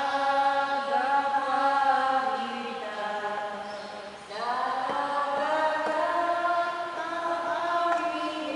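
Voices singing a slow church hymn in one melodic line, with long held notes. The singing dips and breaks about four seconds in, then the next phrase begins.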